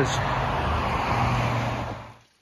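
Steady rush of road traffic from cars on the motorway alongside, with a low, even hum under it. It cuts off abruptly near the end.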